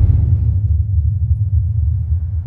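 A deep, steady low rumble with nothing in the higher pitches.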